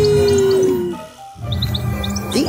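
Cartoon teleport sound effect: a long held electronic tone that slides down and fades about a second in, dotted with short high twinkling blips, then background music comes back in.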